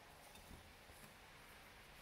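Near silence: room tone, with faint handling of warp yarn on a rigid heddle loom and one small soft tick about half a second in.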